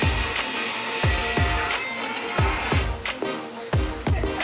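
Background electronic music with a steady beat of deep kick drums that drop in pitch.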